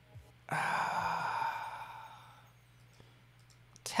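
A man's drawn-out, breathy "uhh", like a sigh, that starts suddenly about half a second in and fades away over about two seconds.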